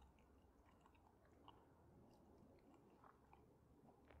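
Near silence, with faint chewing and small mouth clicks as a piece of communion bread is eaten.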